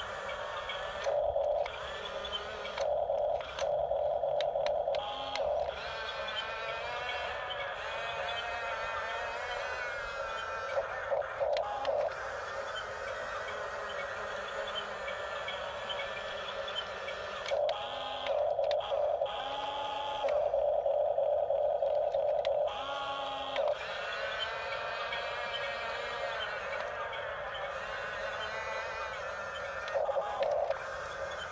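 Toy radio-controlled bulldozer at work: a steady buzzing whine whose pitch wavers as it moves, with louder bursts of a second or two as it drives and pushes dirt.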